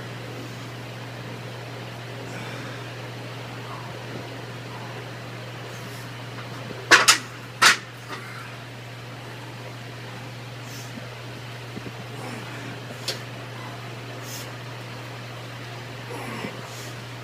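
Two loud metal clanks just over half a second apart, about seven seconds in, as a pair of 100-pound hex dumbbells is lifted off a metal dumbbell rack. A steady low ventilation hum runs underneath.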